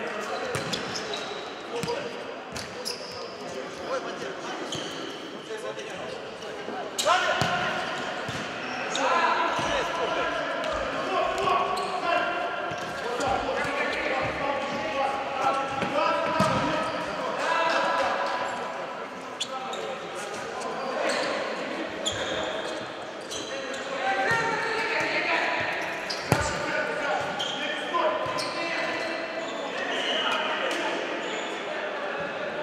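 Futsal ball being kicked and bouncing on the hard indoor court, sharp thuds that echo around the hall, with players shouting to each other throughout. Two kicks stand out, about seven seconds in and near the end.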